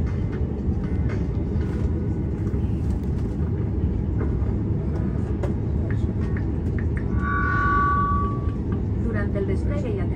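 Steady low rumble inside the cabin of an Airbus A330 as it moves on the ground, with a brief two-tone chime about seven seconds in.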